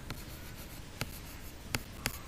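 Stylus tapping and sliding on a writing tablet as letters are handwritten: three sharp taps spread across the two seconds over a faint steady hiss.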